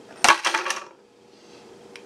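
A quick clatter of several sharp, light clicks, about a quarter second in and lasting about half a second, as the motherboard and its small metal parts are handled.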